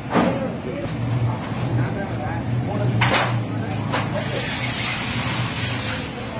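A small goods vehicle's engine runs steadily while barricade poles are moved, giving several sharp knocks. Voices can be heard around it, and a hiss rises near the end.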